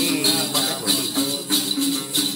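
Tày then singing: a man's voice chanting over a plucked đàn tính lute, with a shaken cluster of small jingle bells keeping a steady beat.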